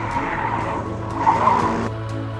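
Formula SAE race car cornering hard: tyres squealing, loudest about a second and a half in, with the engine running underneath. The sound cuts off abruptly near the end.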